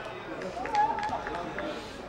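Footballers' voices calling out in celebration on the pitch, one voice rising and falling in pitch through the middle, with a few short sharp sounds among them.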